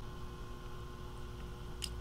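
Quiet room tone with a steady faint electrical hum, and one short faint click near the end.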